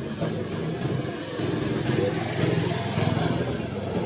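People's voices talking with a motor engine running under them, in steady background noise.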